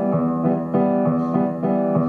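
Piano-sounding keyboard playing an instrumental passage: sustained chords with new notes struck every third to half second.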